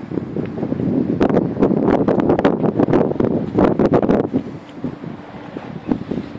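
Wind buffeting the phone's microphone: loud, rough noise that builds about a second in and eases off after about four seconds.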